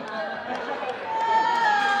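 Several women's voices chattering and laughing over one another, with one high voice drawn out into a long wail in the second half.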